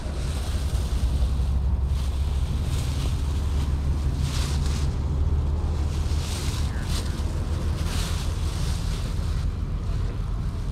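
Wind buffeting the microphone in a steady low rumble, with a thin plastic bag crinkling in several short spells as hands dig through it.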